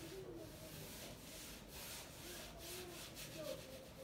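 Repeated rubbing strokes across a canvas, about two a second, as acrylic paint is worked over the surface by gloved hands.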